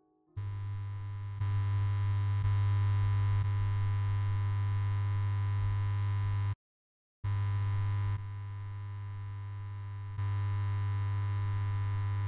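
A steady, low electronic synthesizer drone with a faint higher tone above it. It cuts out completely for about half a second around the middle and steps up and down in loudness a few times.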